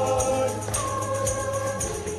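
Congregation singing a hymn together in unison, sustained sung notes over a steady percussion beat.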